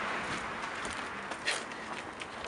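Footsteps over a steady outdoor background noise, with one sharper step about one and a half seconds in.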